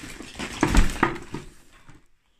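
Household clutter being shifted by hand: rustling and clattering with several sharp knocks, the loudest a heavy thump about three-quarters of a second in, dying away toward the end.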